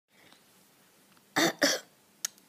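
Two quick coughs from a person, about a second and a half in, after faint room tone: an acted cough voicing a sick character.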